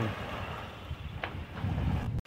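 Wind on the microphone: a steady rushing with a low rumble that grows louder near the end.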